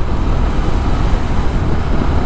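Steady wind and road rush from a motorcycle riding in heavy rain, with a heavy low rumble of wind buffeting the microphone.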